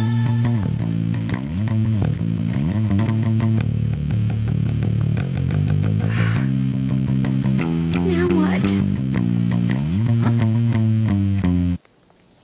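Rock band playing: a bass guitar with notes that slide up into place several times, over distorted electric guitar. The music cuts off suddenly near the end.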